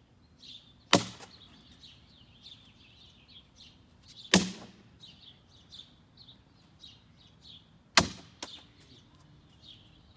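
Cornhole bean bags landing on the near wooden board and the concrete with three loud thuds, about a second in, past four seconds and at eight seconds, the last followed by a smaller knock as it bounces. Birds chirp throughout.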